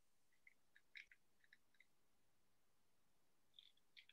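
Faint, irregular clicking from a long-nosed utility lighter's trigger being worked at a candle, the lighter not catching.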